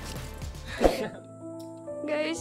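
Background music with long held notes, and a brief sudden sound a little under a second in.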